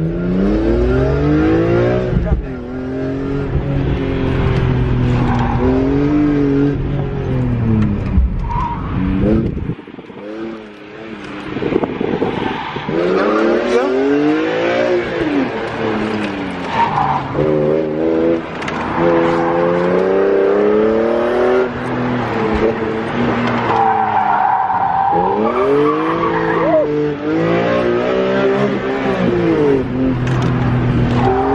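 BMW E46 M3's inline-six, running without a muffler, driven hard from inside the cabin: the revs climb and fall again and again through the run, dropping away briefly about ten seconds in. The tyres squeal at times.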